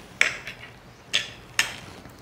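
Metal spoon clinking against a dish three times, each a sharp click with a short ring.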